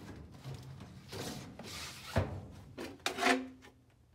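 A pleated furnace air filter in a cardboard frame sliding into the furnace's filter slot, scraping along the slot, then a knock as it seats about two seconds in.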